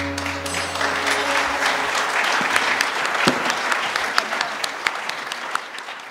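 Audience applauding, building over the first second as the last ringing sitar notes die away, then dying down toward the end.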